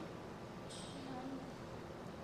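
Faint, distant voices over low room noise, with a brief hiss about three-quarters of a second in.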